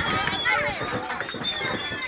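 Crowd of children's voices, many shouting and squealing at once in high-pitched, overlapping calls.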